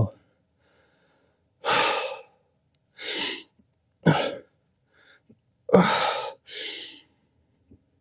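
A man breathing hard through a set of dumbbell hammer curls: five forceful, noisy breaths roughly a second apart. The breaths are out of step with the lifts, as he says right after.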